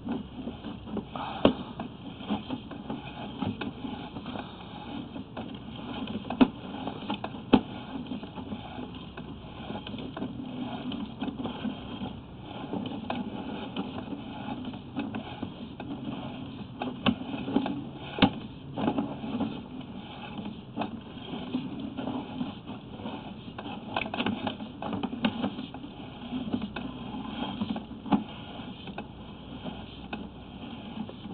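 Sewer inspection camera being pushed down a drain line: irregular clicks and knocks from the push cable and camera head over a steady low hum.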